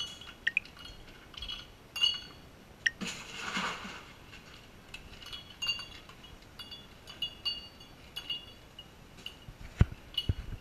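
Glassware clinking again and again as a cocktail is made, with short ringing chinks, and a brief pour of liquid about three seconds in.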